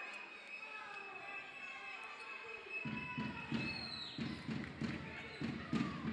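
A basketball being dribbled on a wooden parquet court, beginning about three seconds in with a steady run of bounces, about two a second.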